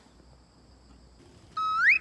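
A short, loud rising whistle-like sound effect, about a second and a half in, at an edit from one scene to the next, after a faint background.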